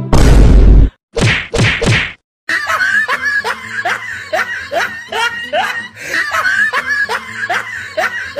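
Comedy sound effects: a loud whack, then three quick swishing bursts, followed by a run of repeated short rising squeaks over a steady low hum.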